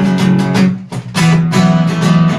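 Acoustic guitar strummed in a steady rhythm, with a chord change about a second in.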